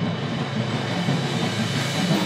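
Percussion ensemble rolling on a suspended cymbal and low drums, the cymbal wash swelling louder and brighter over a steady drum rumble.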